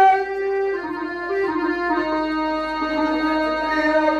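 An electronic keyboard plays a slow melody of held notes stepping downward, accompanying a folk stage performance. A sung note ends right at the start.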